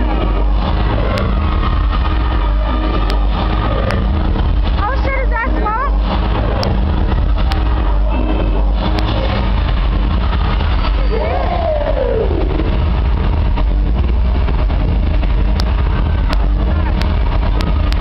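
Loud, bass-heavy music distorted on the microphone, with a crowd's voices and shouting over it; one long whoop rises and falls about two-thirds of the way in.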